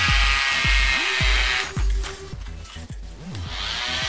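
Small DC motor whining at high speed as it spins two plastic propellers through rubber-band belts. The whine fades about halfway through and spins back up near the end. Electronic background music with a steady beat plays throughout.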